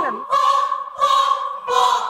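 A seniors' amateur choir singing a run of held notes, three of them in about two seconds, each note starting afresh.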